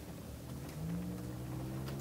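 Cab of a diesel pusher motorhome at road speed: a steady low drone of engine and road noise, with a steady hum that grows stronger about a second in.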